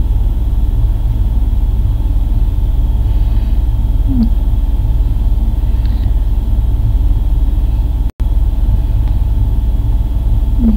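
A loud, steady low hum with faint hiss over it, with a short falling voice sound about four seconds in. All sound cuts out for an instant just after eight seconds.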